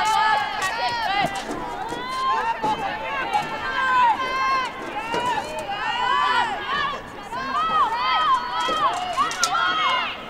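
Several high women's voices shouting and calling out over one another, no words clear, with a few sharp clicks scattered through.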